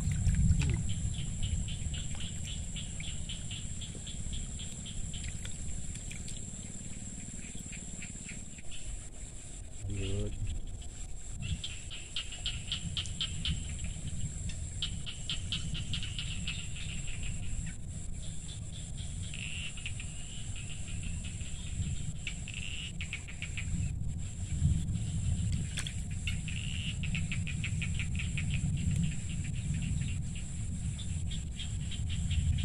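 Insects calling in repeated bouts of rapid, buzzy pulsed chirps, each bout a second or two long, over a steady high-pitched whine and a low rumble.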